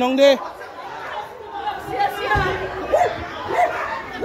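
Several people's voices talking and calling out over one another. A loud, drawn-out shout comes right at the start, and a dull bump sounds a little past halfway.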